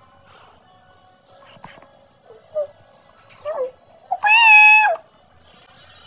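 Cat meowing: two short falling meows, then a loud drawn-out meow of almost a second that starts about four seconds in, holds its pitch and drops away at the end.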